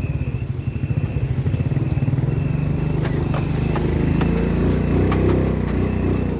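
Motorcycle engine running steadily with a fast low pulsing, growing louder about four to five seconds in.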